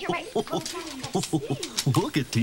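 Children and a woman talking over one another in quick, excited voices.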